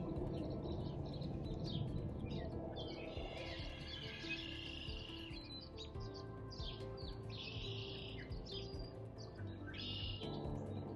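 Small birds chirping and calling again and again. Underneath runs soft background music of long, steady, held low notes.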